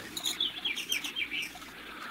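Small birds chirping in a quick series of short, high, downward-sliding notes, a birdsong sound effect on an old radio-drama recording; the chirps fade out a little past halfway.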